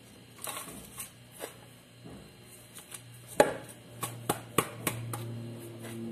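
Metal spoon scooping dry seasoning out of a plastic bowl into plastic jars: scattered scrapes and light knocks, the sharpest about three and a half seconds in and a quick run of them after. A faint low hum sits underneath in the second half.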